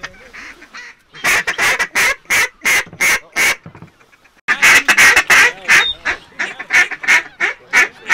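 Hand-blown waterfowl call: a run of short, evenly spaced notes, about three a second, then after a brief pause a faster, busier string of calls.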